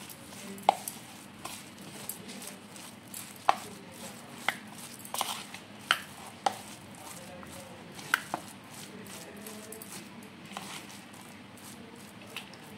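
A steel spoon stirring grated raw mango in a plastic bowl: soft scraping with about ten irregularly spaced sharp clicks as the spoon knocks against the bowl.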